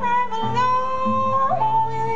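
Live music: a woman singing long held notes, moving to a new note about one and a half seconds in, over acoustic and electric guitar.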